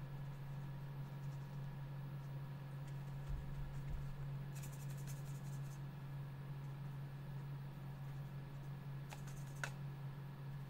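Steady low electrical hum with a short run of light clicks about halfway and a couple more near the end.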